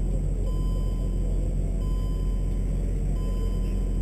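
BMW M3's engine idling steadily with a low, even hum while the car stands still.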